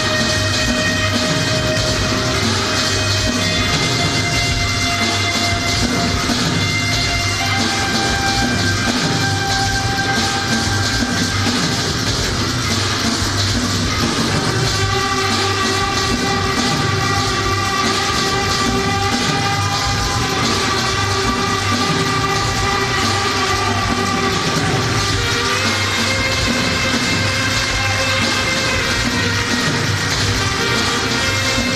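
Live band music: long held notes that move to a new pitch every few seconds over a steady, driving rhythm.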